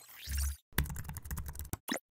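Computer keyboard typing sound effect: a whoosh with a low thump, then a quick run of keystrokes lasting about a second, ending in a single separate click as the search is entered.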